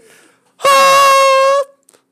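A man's voice singing one long, loud, high note, held steady for about a second, in imitation of a film score melody.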